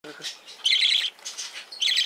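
Pacific parrotlet chick calling in harsh, rapid chattering bursts, the begging cries of a chick being hand-fed. There are two loud bursts of about half a second each, with fainter calls between.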